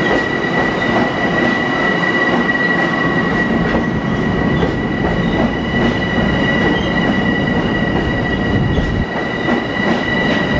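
A Long Island Rail Road electric multiple-unit train rolling past close by along the platform: a loud, steady rumble of wheels on rail with a steady high-pitched squeal over it.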